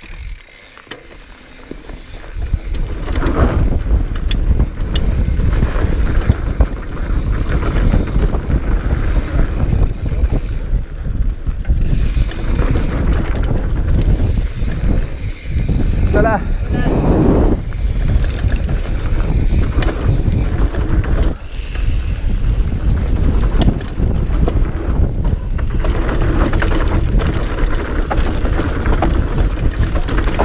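Wind buffeting a helmet-mounted camera's microphone, with the rumble of mountain-bike tyres on a dirt trail during a fast descent; it builds up about two seconds in and stays loud.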